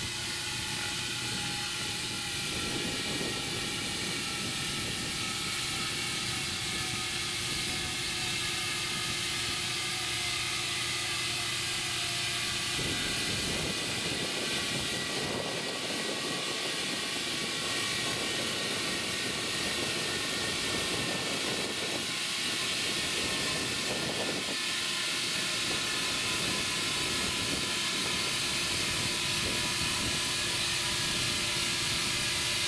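Air hissing steadily through a hose into a large 13.6-26 tractor inner tube as it inflates, with faint tones drifting slowly lower in pitch. A low steady hum under the hiss stops about thirteen seconds in.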